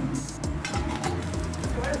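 Background music with a steady low bass line.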